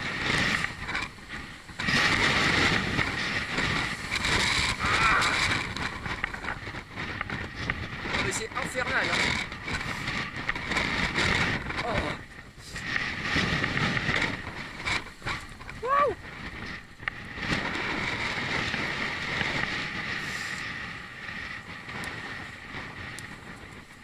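Wind buffeting an action camera's microphone as a cyclist rides into a strong headwind, loud and rising and falling in gusts. The rider's voice breaks through briefly now and then.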